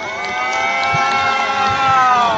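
A long sustained note from the busking performance's playback or vocals, heard played in reverse. It holds steady as several stacked tones, rising a little at the start and bending slightly down toward the end.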